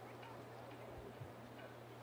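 Faint outdoor field ambience with a steady low hum and faint, scattered distant calls.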